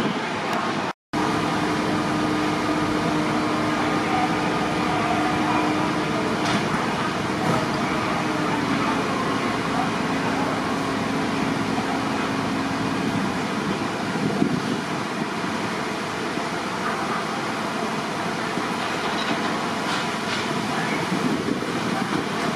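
Steady rushing noise of a fire scene: fire-engine machinery and water jets from a turntable ladder's monitor, with a steady engine drone that lowers slightly in pitch partway through and fades out about thirteen seconds in. The sound cuts out completely for a moment about a second in.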